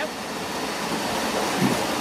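Steady rushing of water, growing a little louder toward the end.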